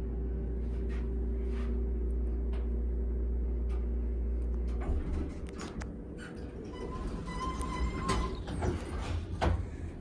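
Modernized ThyssenKrupp hydraulic elevator car travelling down with a steady low hum for about five seconds, then slowing and levelling at the floor. Near the end a short arrival tone sounds, then knocks as the car doors slide open.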